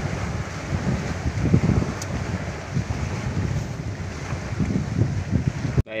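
Wind buffeting the microphone in uneven low gusts, over the rush of a choppy river. It cuts off abruptly just before the end, where a man's voice begins.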